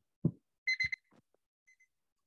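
Electronic timer beeping: a quick run of short high beeps, then two fainter beeps near the end, the alarm marking the end of the one-minute working time. A couple of short dull knocks come with it.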